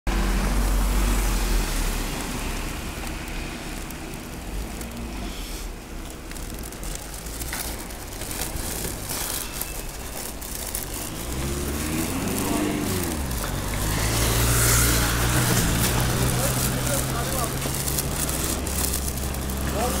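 Street traffic on a snow-covered road. About two-thirds of the way through, a motor vehicle's engine comes in as a steady low hum with hiss and holds to the end.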